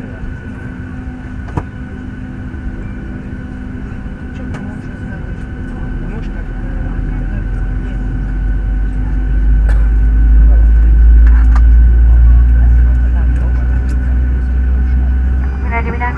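Cabin noise inside a Boeing 737-800 as it begins to move off the stand: a steady whine with a deep rumble that builds from about six seconds in, is loudest around ten to twelve seconds, then eases slightly.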